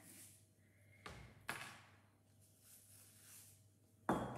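Near silence with two faint, short rustling sounds about a second and a second and a half in.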